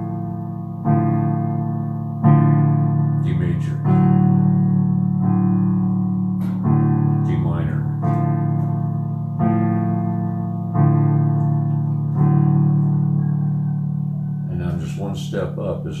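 Sustained chords played on a Roland electronic keyboard with a piano sound, a new chord struck about every second and a half, each one ringing and fading before the next: D major and D minor chords played in turn to show the difference between major and minor.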